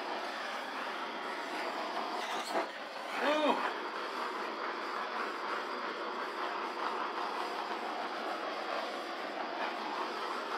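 Handheld torch flame hissing steadily as it is played over wet epoxy resin to heat the surface.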